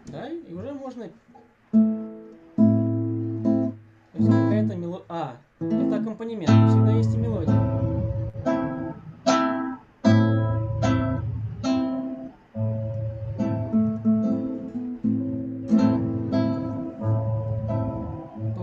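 Acoustic guitar strummed chord by chord, each strum ringing out and fading. The playing is halting at first, with short breaks between chords, then runs more steadily after about six seconds. It is heard through a video call's audio.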